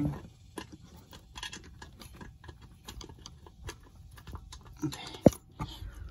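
Light, irregular clicks and taps of a socket and bolts being handled on an engine's intake manifold, with one sharp metallic click about five seconds in.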